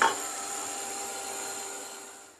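Handheld craft heat tool running, a steady blowing rush with a faint motor whine, drying wet watercolour paint on paper. It tapers off near the end.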